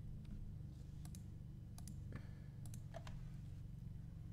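Faint clicks from working a computer's controls while editing in Photoshop: about a dozen scattered clicks, several in quick pairs, over a low steady hum.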